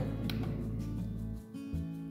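Background music with sustained notes, at moderate level, dipping briefly about three-quarters of the way through.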